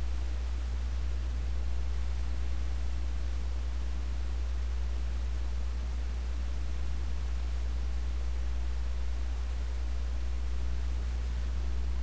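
Steady low hum with a faint even hiss of background noise; no distinct event stands out.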